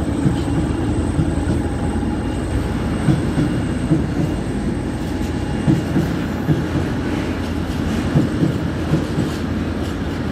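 Freight train of tank wagons rolling past: a steady low rumble of steel wheels on the track, with irregular clacks as the wheels cross rail joints.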